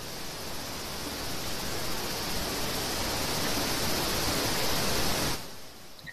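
Steady rushing hiss over a video-call microphone, with no voice in it. It grows slowly louder, then cuts off abruptly about five seconds in.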